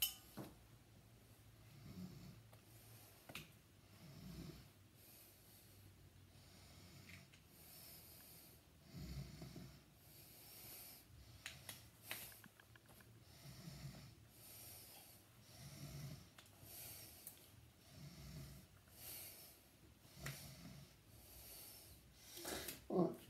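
Near silence: a person's faint, slow breathing close to the microphone, a soft breath about every two seconds, with a few small clicks of hands handling a small object.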